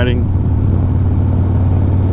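1991 Harley-Davidson Dyna Glide Sturgis's 1340 cc Evolution V-twin running steadily at cruising speed, heard from the rider's seat. The engine note holds level, with no revving.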